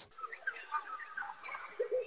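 Sample-library field recording of animal sounds previewing: scattered short chirps and clicks, then a low wavering hoot-like call starting near the end.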